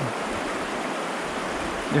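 Creek water running over rocky riffles, a steady wash of noise.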